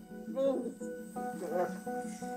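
Soft background music with guitar, held notes running under faint, quiet speech.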